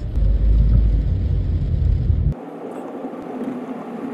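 Car interior noise while driving: a loud low rumble that cuts off abruptly a little over two seconds in. A quieter steady drone with a faint hum follows.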